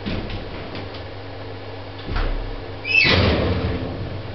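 The doors of a vintage 1940s passenger lift: a deep clunk about two seconds in, then, about a second later, the doors opening with a metallic rattle and a short high squeal.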